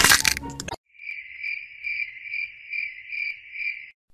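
A short, loud, noisy burst that stops under a second in, then a high, even chirping that pulses about twice a second, insect-like, and cuts off just before the end.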